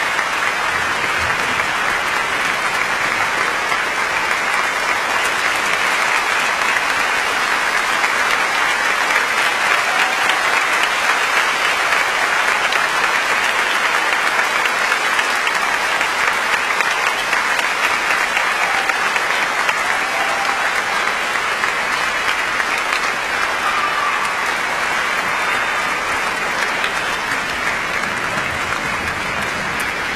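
Audience applauding steadily: dense, unbroken clapping.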